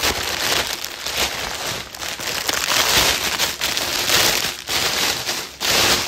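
Clear plastic packaging crinkling and rustling loudly as it is pulled and worked open by hand, in uneven surges with no let-up.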